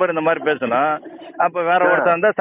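Recorded phone call: a man talking, his voice thin and narrow as heard over a telephone line, with a short pause about a second in.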